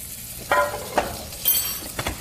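Mahi-mahi fillet and butter sizzling in hot steel pans, with a few sharp metal clinks of utensils against the pans, the brightest and most ringing one about a second and a half in.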